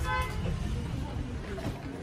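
A brief horn-like toot, a fraction of a second long, right at the start, followed by a steady low rumble and faint murmur.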